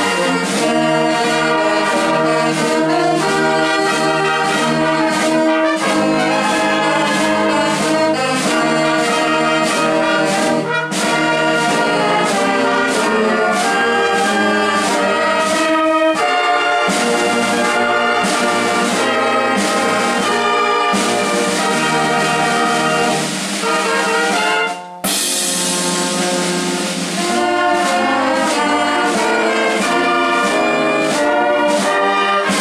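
Live band playing a piece with brass leading, trumpets and trombones to the fore, with a momentary break about 25 seconds in before the music carries on.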